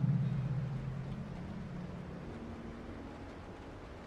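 Low, dark ambient drone from the background score, fading away over the first two seconds and leaving a faint steady hum.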